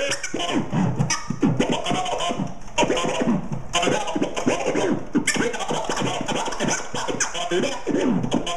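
Vinyl record being scratched on a turntable: the record is pushed back and forth under the needle in quick up-and-down pitch swoops, chopped into short stutters by the mixer's crossfader.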